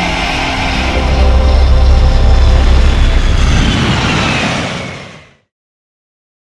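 Intro sound effect of television static hiss over a deep bass rumble, with a falling sweep near the end, fading out to silence a little after five seconds in.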